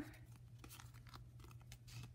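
Faint rustling and a few light ticks of cardstock and paper pieces being handled, over a low steady hum.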